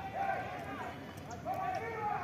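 Distant children's voices calling out during a football game: two short high-pitched shouts, one at the start and one near the end, over a faint outdoor background.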